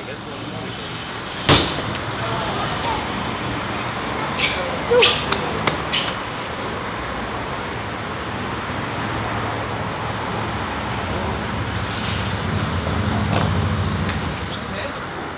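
Steady street traffic noise with a sharp knock about a second and a half in, then a few lighter clicks around five seconds. A low vehicle rumble swells near the end.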